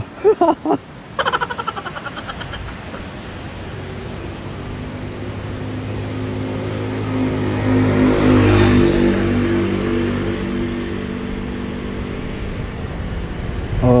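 A motor vehicle passes close by. Its engine and tyre noise build to a peak about eight or nine seconds in, then ease off.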